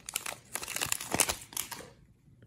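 A Topps baseball card fat pack's crimped wrapper crinkling and tearing as it is pulled open by hand, in a run of irregular crackles that stops shortly before the end.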